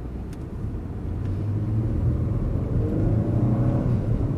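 Car engine and tyre noise heard from inside the cabin, growing louder from about a second in with the pitch edging upward as the car accelerates.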